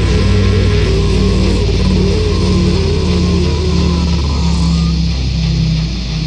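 A heavy metal song's recording with an electric bass played along: dense distorted music with long held low notes and a wavering melody line above them. It gets slightly quieter near the end as the song winds down.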